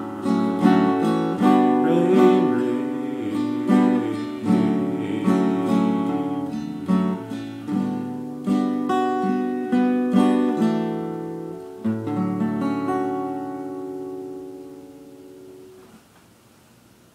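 Acoustic guitar playing the closing phrases of a song, ending on a final chord about twelve seconds in that rings out and fades away.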